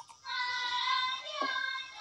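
High wordless singing voice holding long notes that bend gently, set in film background music.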